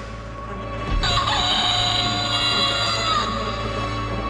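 A rooster crow about two seconds long, starting about a second in, over a steady low electronic drone in a house/techno track.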